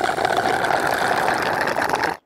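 Cartoon slurping sound effect of a drink being sucked noisily through a straw from a juice carton, a steady gurgling rattle that cuts off suddenly at the end.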